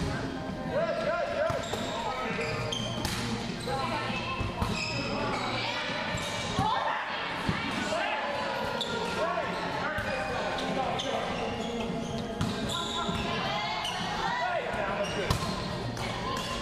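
Indoor volleyball rally in a large, echoing gym: the ball is struck sharply again and again on serve, digs and sets, while players shout and call out indistinctly.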